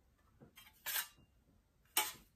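Mostly quiet, with faint handling noise from small decorative fans being moved in the hands: a brief rustle about halfway through and a single sharp click near the end.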